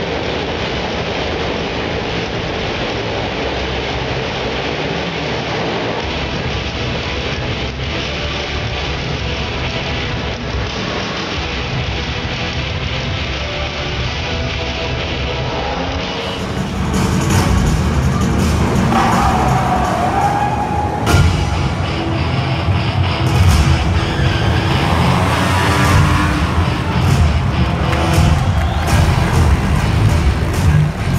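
Motorcycle engines running continuously as riders circle inside a steel-mesh globe of death, under loud show music. About halfway through, the sound gets louder and fuller.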